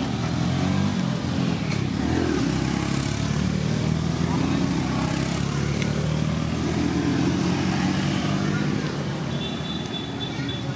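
An engine running steadily, with people's voices mixed in; it eases off slightly near the end.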